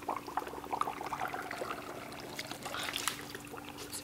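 Dry ice in hot water in a cup, bubbling and trickling quietly with many small irregular pops.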